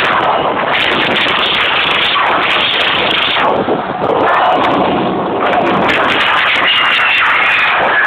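Very loud rave dance music recorded on an overloaded small camera microphone, coming through as a dense, harshly distorted wall of sound with crackling clicks.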